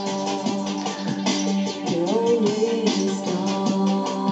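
Guitar music with a steady beat, played back from tape on an Akai X-360 cross-field reel-to-reel recorder running its reverse track after the auto-reverse has switched direction. A note bends upward about halfway through.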